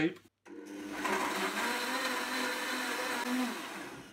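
Countertop blender puréeing cooked vegetable soup. The motor starts a moment in, runs up to speed and holds steady for about three seconds, then winds down near the end.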